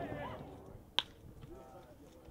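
A single sharp crack of a baseball bat hitting a pitched ball, about a second in, over faint spectator voices.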